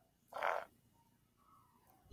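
A single short fart, one brief burst about half a second in.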